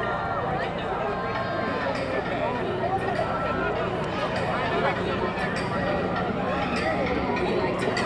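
Crowd of fans lining a walkway, a steady hubbub of many overlapping voices talking and calling out.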